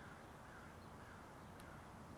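Near silence: faint steady outdoor background hiss with a couple of faint bird calls in the first second or so.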